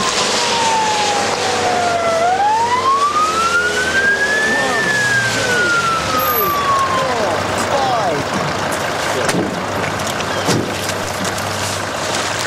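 Ambulance siren wailing as the ambulance arrives: one slow sweep that falls, rises, then falls again and fades out about seven seconds in.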